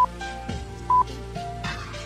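Countdown timer sound effect: a short, high beep once a second, twice here, over soft background music with long held notes.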